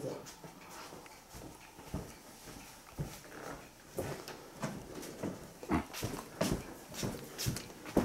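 Footsteps on an old wooden floor, a string of soft knocks and creaks about every half second to second.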